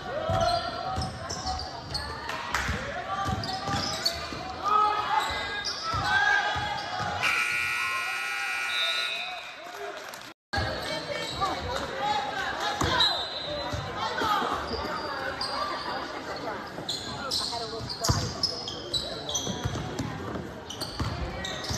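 Basketball game in a school gym: ball dribbling, sneaker squeaks and crowd chatter. About seven seconds in, the scoreboard horn sounds a steady tone for about three seconds as the clock runs out, ending the period. Just after it the sound cuts out for an instant, and then play noise and voices return.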